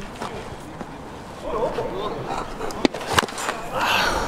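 Baseball bat hitting a pitched ball with sharp knocks about three seconds in, a mishit, off-centre contact that sends the ball along the ground.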